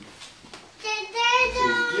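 A young child's high-pitched, sing-song voice, starting a little before the middle and held for about a second with slight changes in pitch.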